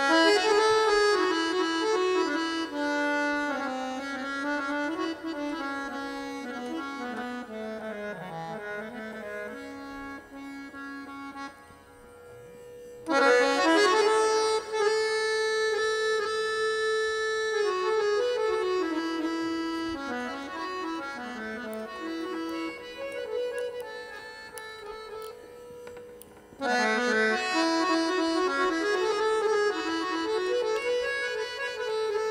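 Harmonium playing the lehra (nagma), the repeating melodic cycle that accompanies a teentaal tabla solo. Each cycle opens loudly and then fades: at the start, about 13 seconds in, and again near the end.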